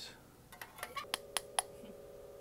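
A few light, sharp clicks of metal tongs and a small china cup against a china dinner plate as food is set on it.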